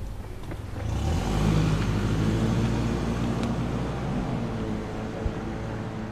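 SUV engine pulling away: the engine note swells about a second in as it accelerates, then eases off as the vehicle moves away. A brief click is heard near the end.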